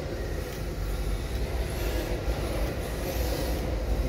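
Electric MST RMX 2.0 RC drift car running on concrete: faint high-pitched brushless motor whine rising and falling in short revs, over a steady low rumble and a constant hum.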